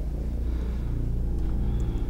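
A steady low rumble under a dramatic film scene.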